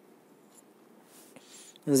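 A pause in a man's spoken lecture: faint room hiss with a brief soft rustle about a second in, then his voice starts again near the end.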